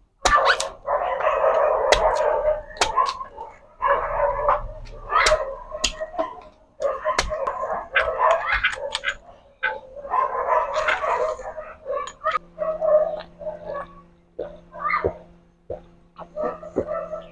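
Repeated sharp chops of a blade cutting into a green coconut to open it. Over them, a dog barks and whines in long runs.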